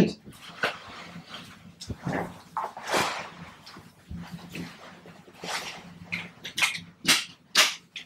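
Vacuum mattress's vinyl cover rustling and its webbing straps being handled and fastened as the sides are folded up around a patient, with several short sharp strap or buckle sounds near the end.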